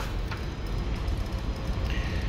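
Steady low rumble of background machinery, the kind of hum heard aboard a ship, with a couple of faint ticks.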